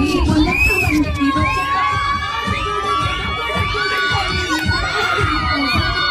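A group of children shouting and cheering excitedly all together, many high voices overlapping, with a low thumping beat underneath.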